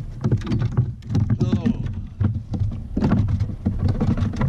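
Repeated knocks and clicks of gear being handled against a plastic fishing kayak, over a low rumble. A brief voice sound comes about one and a half seconds in.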